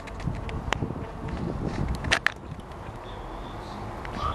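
Low outdoor rumble of distant traffic, with footsteps on pavement and the knocks and clicks of a handheld camera being carried; one sharp click comes just under a second in and a cluster of them about two seconds in.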